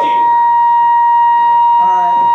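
A loud, steady high-pitched whine held at one pitch, like amplifier feedback, with a voice coming back in near the end.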